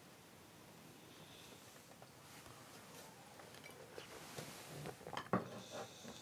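Quiet room with a few faint clinks of small porcelain teacups being handled, the clearest just after five seconds.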